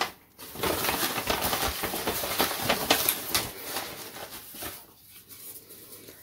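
Hand rummaging in a cloth drawstring bag of small paper slips: a dense, crackly rustle of paper and fabric with many small clicks, dying away after about three and a half seconds.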